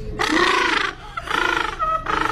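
Gentoo penguin calling loudly with its bill pointed skyward: two harsh calls of about half a second each, with a third beginning at the very end.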